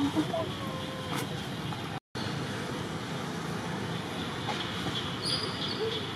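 Outdoor ambience: a steady wash of noise with indistinct voices of people in the distance and a short high chirp near the end. The sound drops out for an instant about two seconds in.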